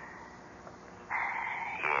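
A short pause with faint hiss. About a second in, a man's voice narrowed as if heard over a telephone begins, first breathy and then as words near the end.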